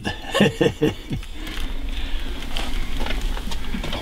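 A man's short laugh, a few quick chuckles in the first second, then only a low steady background hum.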